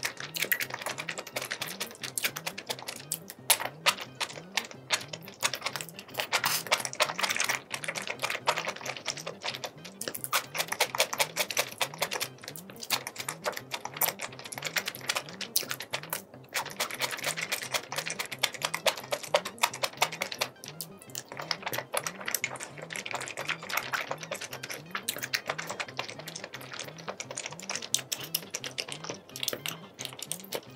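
Close-miked crunching and chewing of pickled yellow radish: dense, crisp crunches in quick runs with short pauses. Soft background music with a steady beat runs underneath.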